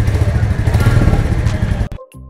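Royal Enfield Meteor 350's single-cylinder engine running with a rapid, pulsing exhaust beat while the throttle is worked by hand. The sound cuts off suddenly near the end.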